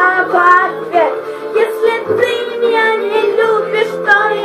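A girl singing a Russian pop song over recorded musical accompaniment, her voice moving in short sung phrases over steady held chords.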